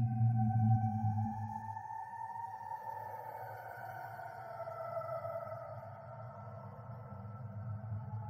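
Horror ambience sound effect: a low drone that fades after the first second or two, under eerie sustained tones that slowly slide downward in pitch.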